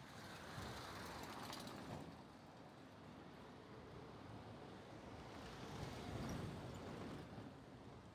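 Faint outdoor city ambience: a low wash of distant traffic noise that swells twice, about a second in and again around six seconds.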